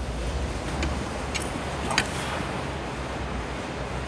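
A few short clinks and clicks of a loaded barbell with bumper plates being lifted from the floor to the shoulders, the sharpest about two seconds in, over a steady low rumble of room noise.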